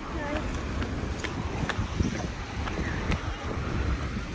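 Outdoor street ambience at a road crossing: a steady low rumble of wind on the microphone and traffic, with faint voices of passers-by and a few light clicks.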